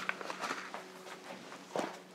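Light handling sounds of a small plastic seed pot being picked up and scooped into a basin of seed-starting mix: soft rustles and clicks, with one sharper knock near the end.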